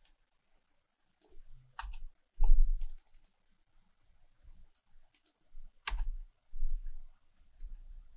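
Typing on a computer keyboard in short, irregular bursts of keystrokes, the heavier strokes carrying a low thump, loudest about two and a half seconds in.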